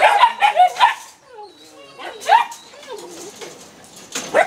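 A litter of caged Belgian Malinois puppies barking and yipping: a quick run of barks in the first second, then scattered fainter yips and whines, with one louder yelp a little past the middle.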